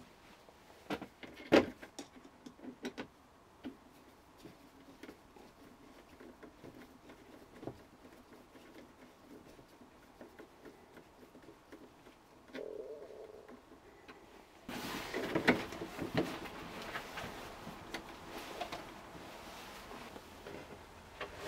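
Handling noises of a plastic roof-vent trim frame being fitted back into a van ceiling: scattered clicks and knocks at first, then a denser run of rubbing and scraping in the last few seconds.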